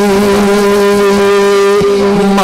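A man's voice singing a naat, holding one long steady note into a handheld microphone, with a brief break near the end.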